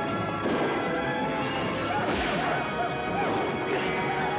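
A film soundtrack mix: music playing over the hoofbeats of galloping horses, with yelling voices.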